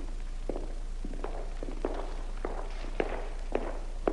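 Footsteps of a man walking at an even pace, roughly one step every 0.6 seconds and growing a little louder, over a low steady hum.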